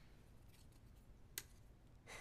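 Near silence, broken once, about one and a half seconds in, by a single faint, sharp click of a playing card set down on a wooden table.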